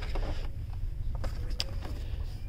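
Steady low rumble of background noise in a store, with a few light clicks and rustles of cardboard-and-plastic carded action figure packages being handled about a second and a half in.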